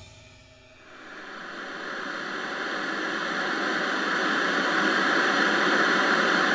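A fading cymbal ring dies away, then television static hiss fades in about a second in and grows steadily louder.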